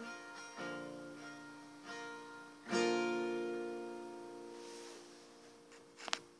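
Acoustic guitar playing the song's closing chords: three strums, the last and loudest about three seconds in, left to ring out and fade. A short click comes at the very end.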